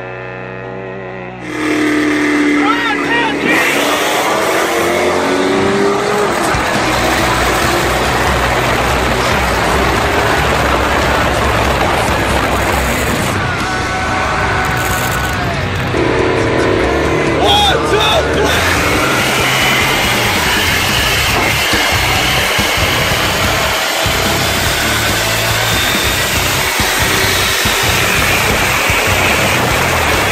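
Loud car engine and road noise recorded from inside a moving car, starting suddenly about a second and a half in after a short stretch of music, with people's voices over it.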